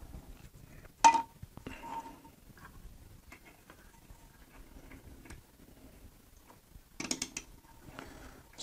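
Small clicks and taps of a 3D-printed plastic belt tensioner being handled and pushed into place against a 3D printer's metal frame. One sharper click with a brief ring comes about a second in, and a quick run of clicks comes near the end.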